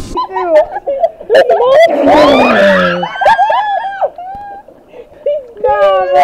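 Young girls' high-pitched shouting and squealing.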